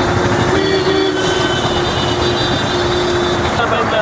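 Loud roadside street noise with traffic and crowd voices, and a steady held tone that stops about three and a half seconds in.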